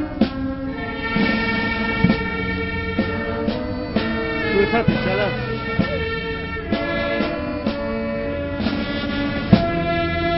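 Brass band music: held brass notes that change pitch note by note over regular drum beats.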